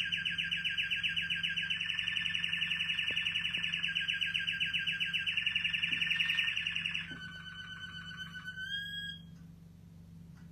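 Pet canary singing a long, very fast rolling trill that steps between a few pitches, then a thinner trill that rises in pitch and stops about nine seconds in.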